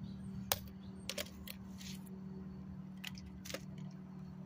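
Hammer knocking on a block of ice to break out toy trucks frozen inside: several sharp, separate knocks, the loudest about half a second in.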